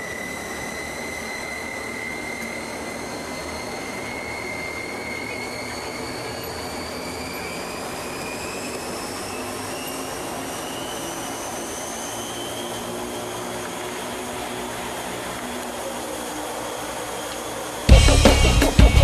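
Aircraft engine noise heard from inside the cabin: a steady drone with a high turbine whine that slowly rises in pitch.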